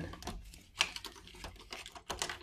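Light clicking and rattling as plastic vertical blind slats are pushed aside by hand at a glass door, with one sharp click a little under a second in.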